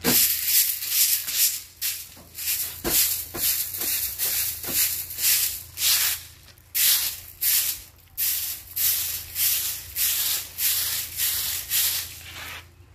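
Stick broom (walis tingting) sweeping the ground in quick, even strokes, about two a second, each a dry scratch.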